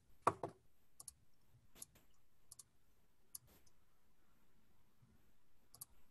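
A few faint, scattered clicks and light knocks, the loudest one just after the start, over quiet background noise.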